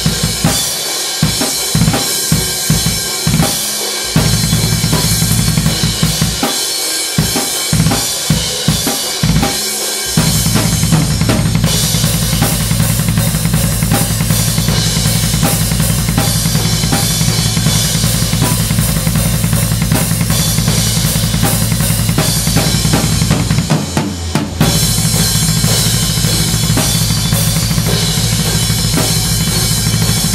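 Acoustic drum kit played hard in death metal style: separate bass drum strokes under snare and cymbals for about the first ten seconds, then fast, unbroken double bass drum with crashing cymbals. The double bass stops briefly near 24 seconds and starts again.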